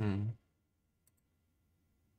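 A short hummed 'hmm', then about a second in two faint quick clicks.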